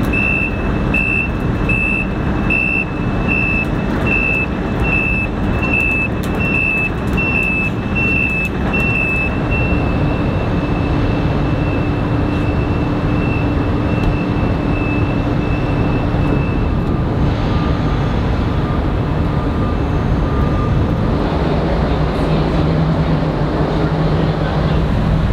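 Tracked excavator driving off a ship's ramp: its engine and tracks run steadily while its travel alarm beeps about three times every two seconds. The beeping grows fainter about halfway through and stops about two-thirds of the way in, leaving the steady machinery noise.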